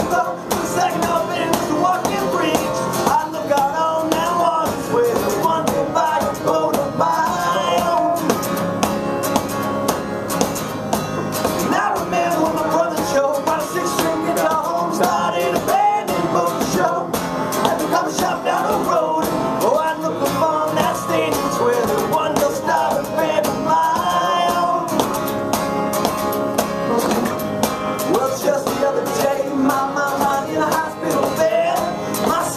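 Unplugged acoustic guitar strummed in a steady rhythm, with a man's voice singing over it at times.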